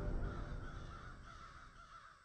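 A crow-like cawing call repeating and fading out steadily as the end of the channel's intro sound.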